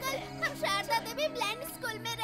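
Dramatic film background score with steady sustained low notes, under children's wavering, tearful voices crying out.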